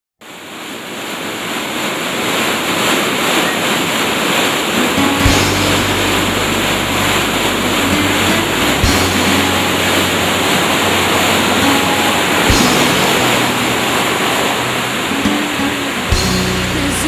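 Rushing waterfall, a loud steady wash of water noise that fades in over the first couple of seconds. A soft instrumental intro of held low notes enters about five seconds in, with the chord changing every few seconds.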